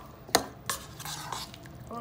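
A spoon stirring a thick chicken-and-mayonnaise spread in a bowl, with a sharp clink against the bowl about a third of a second in and a softer one shortly after, and soft scraping between.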